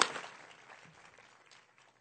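Audience applause dying away over the first second or so, leaving near silence.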